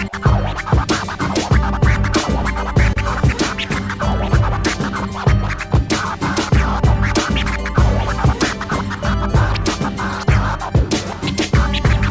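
Turntable scratching: a vinyl record pushed back and forth by hand on a turntable in quick, choppy strokes, cut in and out at the DJ mixer, over a steady hip hop beat.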